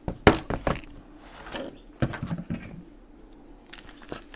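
A thick handmade paper junk journal being picked up and handled on a desk: a sharp thump about a quarter second in, then further knocks and paper rustling as it is opened.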